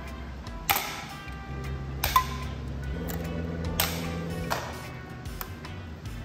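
Hand pop-rivet gun setting aluminium pop rivets: three sharp snaps, about a second and a half apart, as the rivet stems break off, with a few lighter ticks between, over background music.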